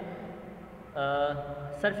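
A man's voice in a hesitation pause: a brief, steady held filler sound like "uhh" about a second in, then speech resumes just before the end.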